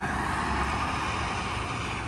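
Road traffic: a steady hiss of car tyres and engines that cuts in suddenly and holds level, with no single pass-by rising or falling.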